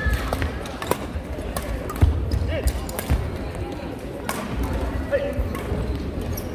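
Badminton rally in a reverberant sports hall: sharp racket hits on shuttlecocks come roughly once a second, over thudding footwork and brief shoe squeaks on the wooden court floor. Voices echo in the background.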